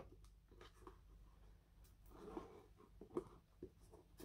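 Near silence, with faint rustles and a few soft clicks from string being wrapped around and tied on a small handmade cardboard box.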